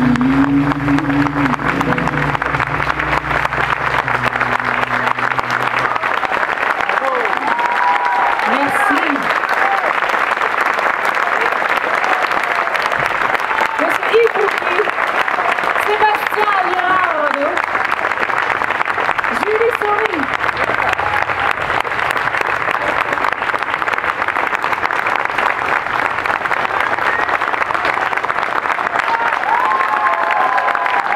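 Live audience applauding steadily at the end of a song, with scattered shouts from the crowd. The band's last bass and guitar notes die away in the first few seconds.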